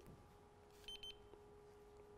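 Handheld infrared thermometer gun giving one short, faint high beep about a second in as it switches on and takes a temperature reading.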